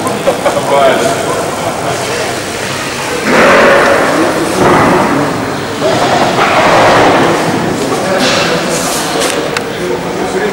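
People's voices: loud exclamations and laughter in about four bursts from about three seconds in, echoing in a large empty hall.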